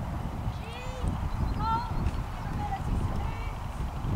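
A trotting pony's muffled hoofbeats on a sand arena, under wind rumbling on the microphone. A few faint, short high chirps come about one and two seconds in.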